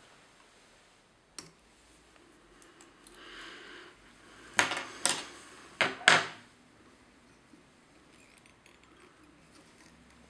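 Small metal fly-tying tools being handled and set down on a hard bench: a light click about a second and a half in, a brief rustle, then four sharp metallic clinks in quick succession around the middle.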